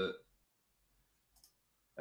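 Near silence in a quiet room, broken by a single faint click about one and a half seconds in.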